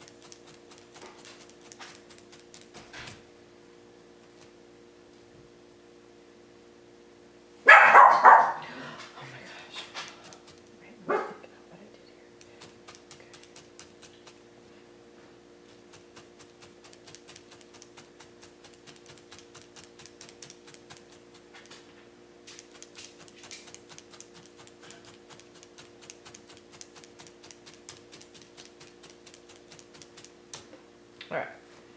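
A dog barks, a quick loud burst of barks about eight seconds in and one more shorter bark about three seconds later. Around it, faint rapid ticking of a felting needle stabbing wool into a burlap-covered pad.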